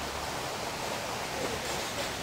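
A steady, even background hiss with no distinct sounds standing out of it.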